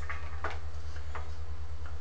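A low hum that pulses evenly about ten times a second, with a few faint ticks over it.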